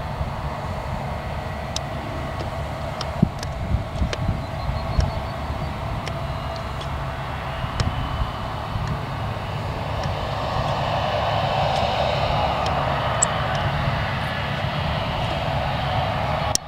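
New Holland combine harvester and John Deere tractor engines running steadily in the field, with a few sharp knocks between about three and five seconds in and a rushing noise that swells in the second half.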